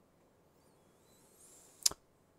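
A single sharp click near the end, over faint room hiss.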